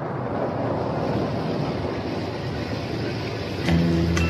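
Recorded rainstorm sound effect opening a 1960s pop record: a steady rushing rain noise that fades in. The band comes in with drums and bass about three and a half seconds in.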